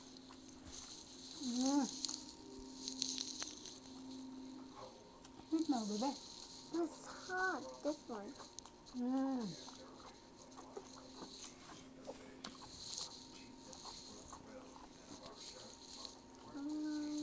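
Close-miked eating sounds: chewing and mouth noises come in repeated short bursts. Between them are several brief wordless voice sounds that glide up and down in pitch, over a faint steady hum.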